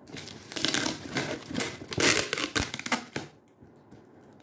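Packing tape and plastic wrap on a cardboard box crinkling and tearing as they are pulled at by hand, in an irregular run of crackles that is loudest about two seconds in and stops a little after three seconds.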